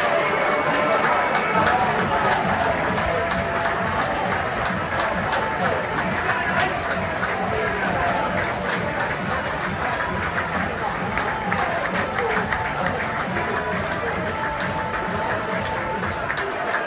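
Music played over a football ground's sound system, with the crowd clapping and some voices, as the teams walk out onto the pitch.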